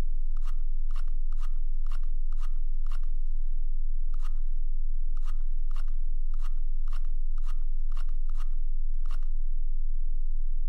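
Computer mouse scroll wheel being turned in a run of short clicking strokes, about two a second, stopping about a second before the end. A steady low hum runs underneath.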